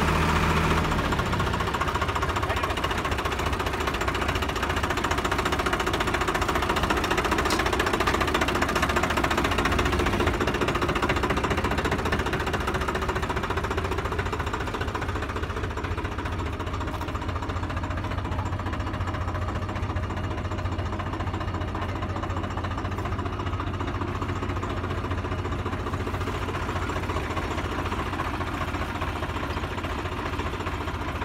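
Diesel tractor engine running steadily close by, with a fast knocking rattle. It eases slightly about halfway through.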